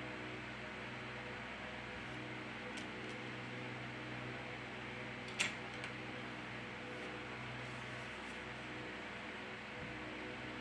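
Steady low hum with a hiss, like a fan running in a small room. A single short click about five and a half seconds in, with a fainter one just after.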